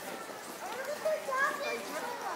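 Passers-by talking in an outdoor crowd, with a child's high-pitched voice standing out in the second half.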